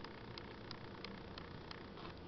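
Quiet room tone with faint, evenly spaced ticks, about three a second.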